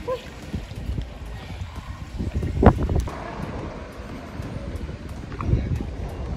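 Wind buffeting the microphone, with faint splashing from a swimmer in the pool and one sharp knock about two and a half seconds in.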